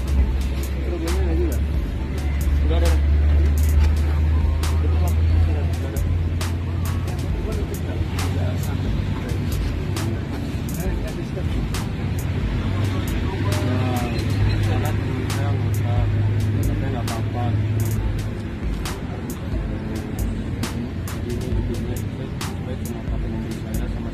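Low steady vehicle rumble, strongest in the first few seconds and again for a stretch past the middle. It sits under indistinct voices and background music with sharp ticks.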